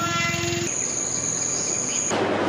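An insect's steady, high-pitched drone sets in about two-thirds of a second in and holds without change. Before it, a short held lower tone with overtones fades out.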